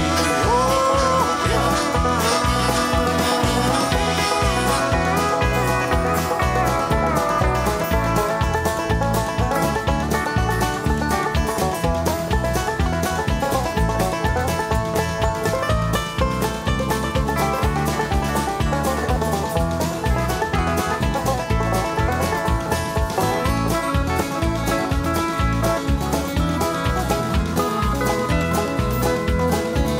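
A live country band plays an instrumental break over a steady, quick beat, with acoustic guitars, electric guitar, pedal steel guitar, bass and drums. A harmonica is heard in the first seconds.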